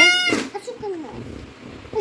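A child's short, high-pitched squeal rising in pitch, ending with a click about a third of a second in, followed by faint voices in the room.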